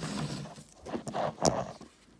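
Handling noise of a phone being moved and propped up on a wooden table: rustling and light knocks, with one sharp knock about one and a half seconds in.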